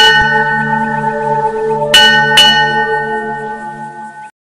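Bell struck three times, once at the start and then twice close together about two seconds in, each stroke ringing on over a steady low drone that fades toward the end.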